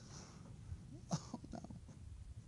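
A faint voice saying "oh, no" about a second in, short and drawn out in pitch, over a quiet room.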